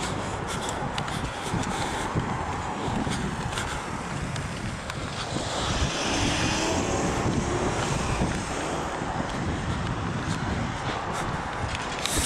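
City street traffic noise: a steady hum of cars with wind on the microphone, swelling a little around the middle.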